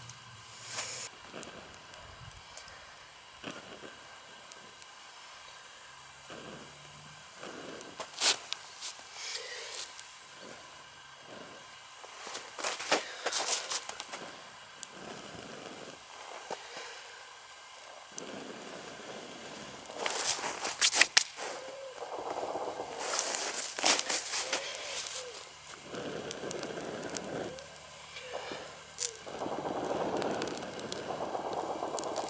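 Small kindling fire of thin twigs crackling and popping as it slowly catches, with rustling as twigs are pushed in by hand. Clusters of sharp snaps stand out several times, the loudest in the second half. The fire is hard to light because the wood is too thick or too wet.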